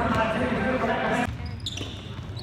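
Basketballs bouncing on a hardwood gym floor over a steady din of voices. About two-thirds of the way in, the sound drops off abruptly and a few short high squeaks follow.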